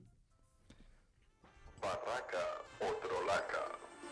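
About a second and a half of near silence, then the opening of a podcast section's jingle: a voice over music, fairly faint.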